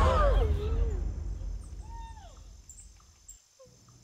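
A wavering tone that slides down in pitch and fades out within the first second, followed by a quiet outdoor background with one short downward-sliding bird-like call about two seconds in, and near silence at the end.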